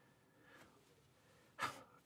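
Near silence, then a man's short intake of breath near the end.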